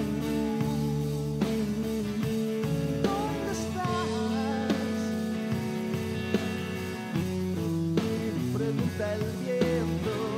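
Rock band playing live: acoustic guitar, electric guitar, electric bass and drum kit, with a melody that bends in pitch in the middle.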